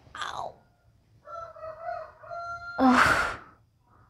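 A woman's breathy vocal sounds: a short falling sigh at the start, a held moaning tone in the middle, then a loud breathy sigh about three seconds in.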